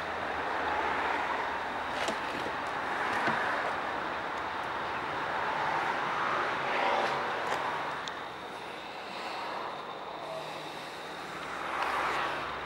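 Steady outdoor background noise, rising and falling gently, with a few faint clicks.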